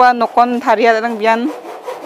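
A woman speaking for the first second and a half, with a repeated scraping sound in the background that carries on after she stops.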